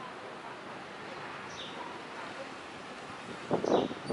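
Steady outdoor background noise with no one close by speaking, a faint short high descending chirp about a second and a half in, and voices starting near the end.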